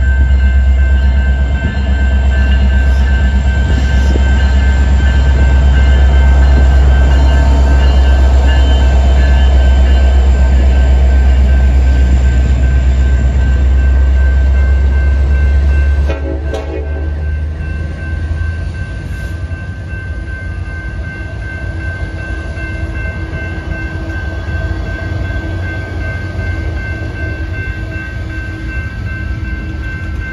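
Freight train passing close by. The diesel locomotives' engines give a loud, deep rumble for the first half, then it drops off suddenly about halfway through as the last unit goes by. After that comes the lighter rumble of freight cars rolling past, with a steady high-pitched ringing tone throughout.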